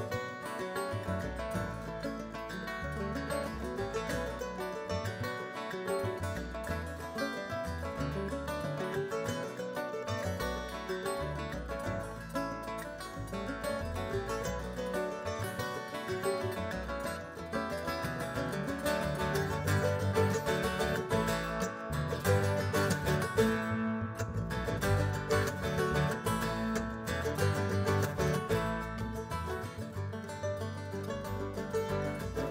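Live bluegrass string band playing an instrumental passage on mandolin, banjo, acoustic guitar and upright bass, growing louder in the second half.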